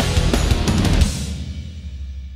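Rock music with a drum kit and cymbals, ending on a last hit about a second in that rings out and fades away.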